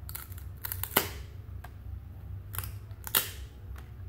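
1997-98 Topps basketball cards handled by hand and pried apart, the card stock giving several sharp snaps and swishes; the loudest come about a second in and just after three seconds. The cards are stuck together.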